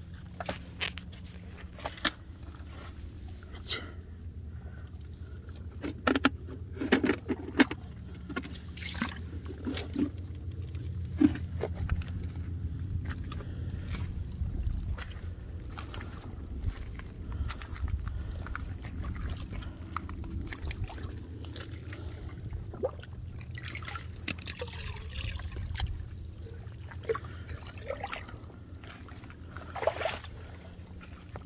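Rubber boots stepping through shallow tide-pool water and over wet rocks and shells, with scattered clicks and light splashing over a steady low rumble.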